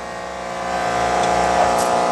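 Electric drill motor running with a steady whine that grows louder over the first second.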